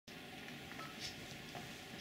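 Faint room tone with a couple of light ticks.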